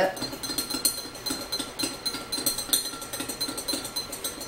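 A spoon stirring a drink, clinking against the sides of a cup several times a second, with a faint ringing.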